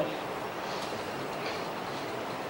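Steady background hiss with no distinct events, in a pause between speech.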